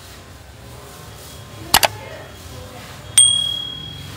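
Subscribe-button sound effect: a quick double click, then a bright bell ding about a second and a half later that rings on and fades.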